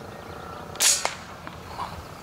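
Artemis M22 PCP air rifle firing one .22 pellet, a sharp crack about a second in, followed a fraction of a second later by a fainter crack as the pellet strikes the pigeon.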